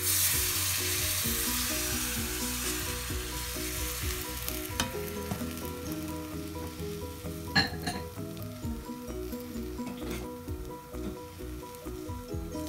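Batter hitting a hot oiled non-stick frying pan and sizzling: the hiss starts suddenly as it is poured and slowly dies down as the flatbread sets. A sharp click about seven and a half seconds in.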